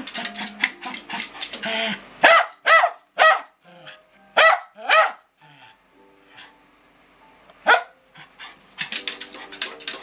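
Lakeland Terrier barking about six times in short, sharp barks, with rapid taps on a pair of small bongo drums at the start and again near the end as he strikes the drumheads with his paw and nose.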